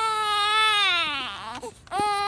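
Newborn baby crying: one long wail that slides down in pitch after about a second, a brief catch of breath, then a fresh cry starting right at the end.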